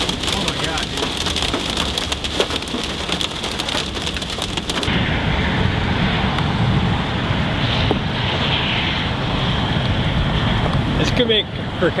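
Hail pelting the vehicle's roof and windshield, a dense rapid clatter of hits that cuts off abruptly about five seconds in. A low steady rumble follows.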